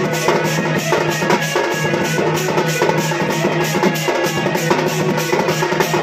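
Sambalpuri folk dance music driven by a double-headed dhol drum beaten in a quick, steady rhythm, over a held low tone from the accompanying band.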